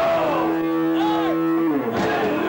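A hardcore band playing live: a single low note held for about a second and a half, sliding down in pitch near the end, with a brief higher wavering tone over it in the middle.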